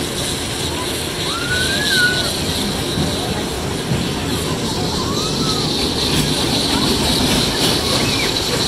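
Small fairground kiddie roller coaster running, a steady rumble of its cars rolling around the steel track, with a few short rising-and-falling voice calls over it.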